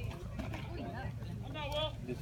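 Background voices of spectators chatting at a baseball field, with one high-pitched voice calling out briefly near the end.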